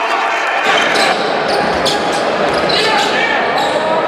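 Live basketball game sound in a large sports hall: a basketball bouncing on the hardwood court and several sharp knocks, over a steady murmur of crowd and player voices.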